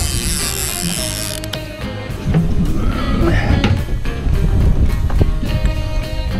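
Background music over a conventional fishing reel being cranked, its mechanism clicking as a hooked king mackerel is reeled up to the boat. A bright hiss sounds in the first second or so.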